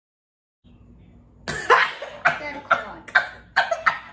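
A person coughing: a run of about seven harsh coughs, roughly two a second, starting about a second and a half in.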